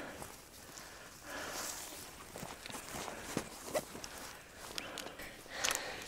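Footsteps and rustling through grass on a steep bank, with a few short sharp snaps or clicks.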